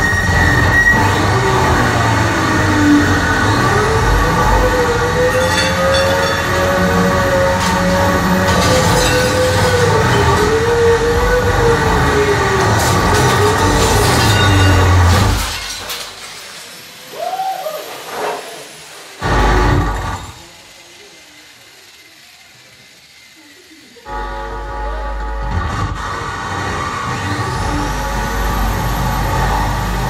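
Harsh noise-music performance: a loud, dense wall of amplified metallic noise and droning tones with a wavering whine, the performer working an angle grinder. It cuts out about halfway, a few crashes of smashed crockery follow, there are a few seconds of near quiet, and then the wall of noise comes back.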